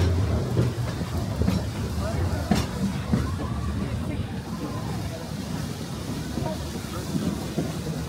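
Dollywood Express steam train's passenger cars rolling along the track, a steady low rumble heard from an open-air car, with faint rider voices.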